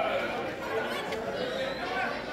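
Spectators' voices: several people talking and calling out at once, overlapping into indistinct chatter.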